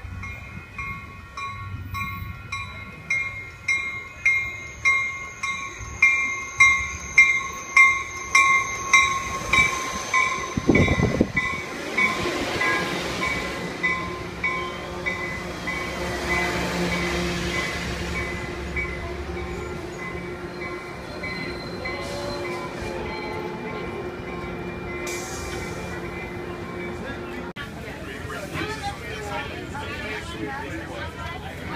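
A bilevel commuter train pulls into the station with its bell ringing in quick repeated strokes, about one and a half a second, growing louder as it nears, then stopping about twelve seconds in. The train then rolls past and slows with a steady low rumble and hum.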